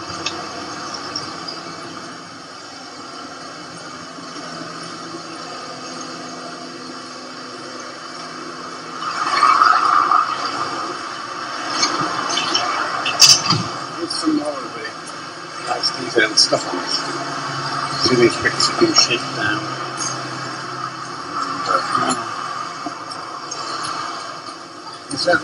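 Indistinct talking over steady background noise, becoming louder and busier from about nine seconds in, with scattered short clicks.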